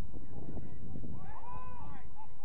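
Wind rumbling on the microphone of an outdoor pitch-side camera, with a distant, drawn-out shout from a player, rising then falling in pitch, starting about a second in.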